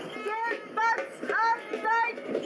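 A high-pitched voice singing short rising notes, four of them about half a second apart, over a murmur of crowd voices.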